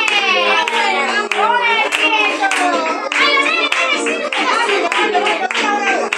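A group of people clapping their hands in time to music with a singing voice, the claps sharp and repeated throughout.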